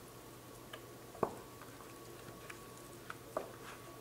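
Hands moving raw, oiled lamb shanks around in a metal roasting pan: faint soft handling noise with a few small clicks and light knocks, the sharpest about a second in and another near the end.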